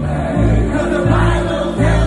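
Gospel choir singing over a deep bass line of held notes that change roughly every second.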